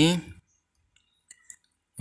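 A man's voice finishing a short phrase, then quiet broken by two faint short clicks about a second and a half in.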